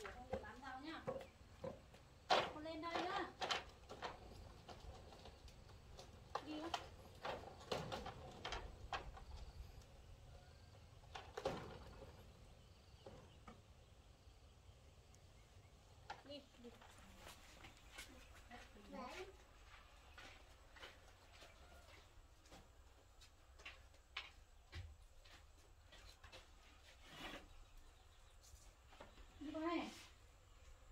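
Quiet, intermittent voices of a woman and a small child in short bursts, with scattered light knocks and clicks between them.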